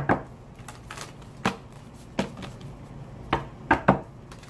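A deck of tarot cards being shuffled by hand, giving a string of sharp, irregular taps and snaps of the cards, several of them close together near the end.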